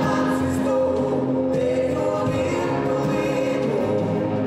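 A man singing a slow song into a microphone with a live band, with other voices joining in, holding long notes.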